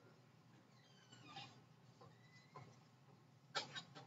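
Near silence: classroom room tone with a few faint squeaks, and a brief sharp noise about three and a half seconds in.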